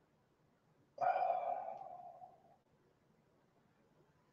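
A man's sigh: one breathy exhale about a second in, fading away over about a second and a half.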